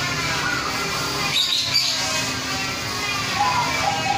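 Caged zebra doves (perkutut) calling, with a steady trilled coo starting near the end and a couple of high chirps about a second and a half in, over a background of voices and music.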